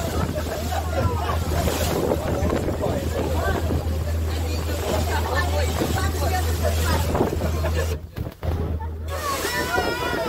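Motor tour boat under way at speed: a steady low engine drone with water rushing and splashing along the hull, and wind buffeting the microphone. The sound drops briefly about eight seconds in.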